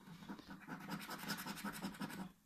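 Scratch-off coating of a lottery scratchcard being rubbed away in quick, repeated strokes to uncover the letters.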